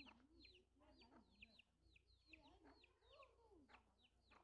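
Faint farmyard bird calls: a quick series of short, high chirps that slide downward, about three or four a second, over soft lower calls that rise and fall in pitch.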